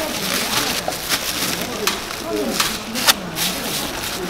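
Plastic bag of hot soup being twisted shut and knotted by hand, rustling with a few sharp crackles, the loudest near the end, over low background voices.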